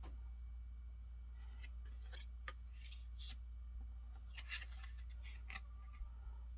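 Tarot cards being handled: scattered soft clicks and brief rustles as the cards slide against and tap each other, over a steady low hum.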